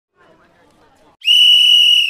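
A single long, steady blast on a referee's whistle, starting a little over a second in, signalling the penalty kick to be taken. Faint voices murmur before it.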